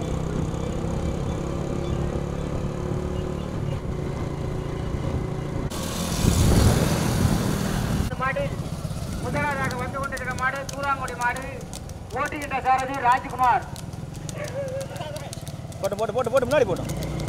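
Several motorcycles running at low speed, with a loud rush of noise about six seconds in, then men's voices shouting over the engines from about eight seconds on.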